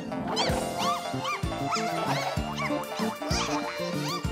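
Bouncy cartoon music with a steady beat, under a string of short squeaky chirps that each rise and fall in pitch, two or three a second.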